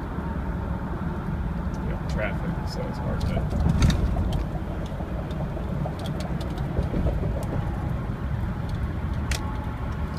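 Inside the cabin of a 2003 Chevrolet Suburban half-ton at about 60 mph: steady engine and road drone with a few light clicks. Its 4L60-E automatic is in drive and keeps dropping in and out of overdrive, which the owner suspects is slipping or a faulty overdrive shift solenoid.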